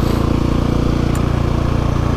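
Husqvarna 701 Supermoto's single-cylinder four-stroke engine running steadily through its Wings aftermarket exhaust while riding. The exhaust sounds off, and the owner thinks the silencer needs repacking.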